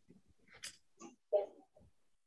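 A few faint, brief breaths and small noises picked up by participants' open microphones on a video call, three or four short sounds with quiet between.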